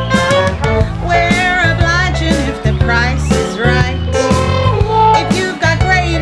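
Recorded jazzy show tune in a 1920s New Orleans style: a woman sings with vibrato over an orchestrated band with a steady bass line.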